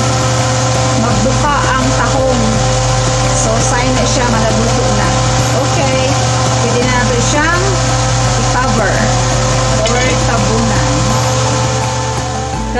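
A steady, loud motor-like whir runs throughout, with indistinct voice-like sliding tones over it.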